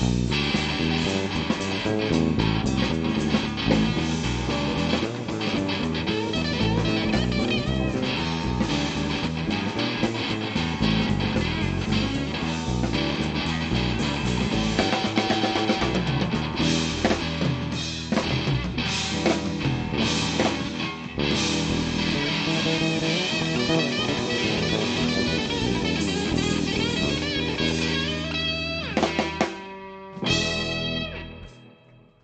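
Live rock band playing an instrumental passage: electric guitars, bass guitar and drum kit. The music thins out and drops in level near the end.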